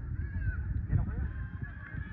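Distant voices calling across an outdoor sports field, faint and wavering, over a loud, uneven low rumble on the microphone.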